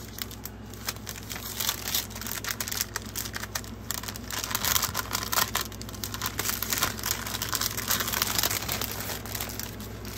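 Paper and plastic packaging being handled and shuffled: continuous crinkling and rustling with many small clicks and taps.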